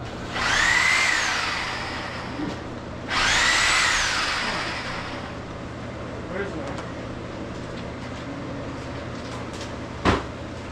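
A power tool run twice in bursts of about two seconds, each with a whine that rises in pitch and then falls away.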